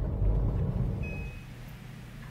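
Low rumble inside a car's cabin. About a second and a half in it drops away to a quieter room with a faint steady hum, and a brief thin high tone sounds just before the change.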